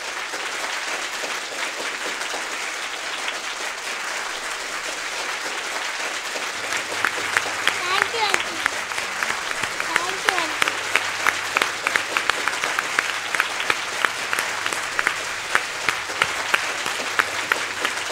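Studio audience applauding steadily through the whole stretch, with sharper individual claps standing out more in the second half.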